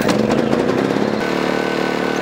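Honda inverter generator running. Its engine sounds uneven at first, then settles into a steady, even note about a second in.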